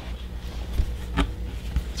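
A cardboard board book being handled and opened: a couple of faint soft clicks over a low steady room hum.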